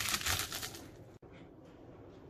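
A bunch of fresh watercress rustling and crunching in the hand as its stems are trimmed, a crisp crackle that fades out after about a second.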